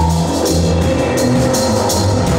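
Live band playing loud amplified music, with a drum kit and a low bass line to the fore.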